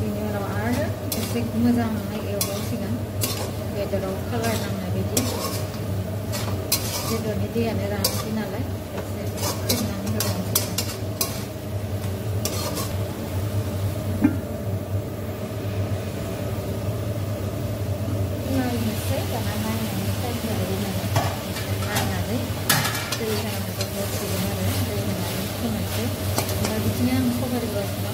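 A metal spatula stirring and scraping chicken in a black kadai over a gas flame, with frying sizzle and many sharp clinks against the pan. About halfway through a metal lid is set on the pan with a knock and the clinking stops for a few seconds, then the sizzle comes back louder and the stirring resumes.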